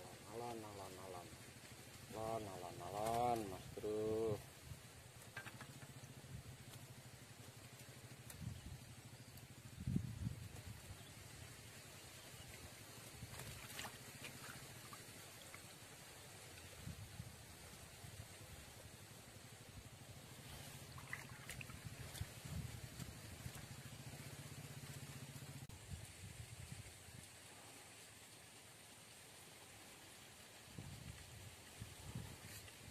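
A person's voice for the first four seconds, then quiet outdoor ambience with a faint steady low hum and a few soft knocks.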